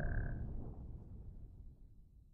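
The fading tail of a logo sting sound effect: a low rumble dying away, with a brief high tone in the first half second.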